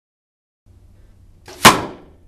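An arrow tipped with a Rage three-blade broadhead, shot from a compound bow, hits a ballistic gel block backed by plywood: a faint click, then one sharp smack about a second and a half in that dies away quickly.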